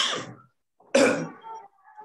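A man coughing twice, about a second apart, each cough sudden and fading quickly.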